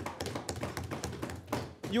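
Members of parliament thumping their wooden desks in approval: a dense, irregular run of knocks that stops just before two seconds in, with voices among it.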